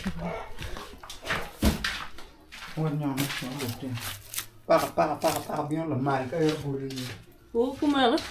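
People talking, in speech the recogniser did not transcribe, with one sharp knock a little under two seconds in.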